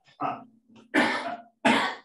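A person coughing and clearing the throat in three short bursts, the second and third the loudest.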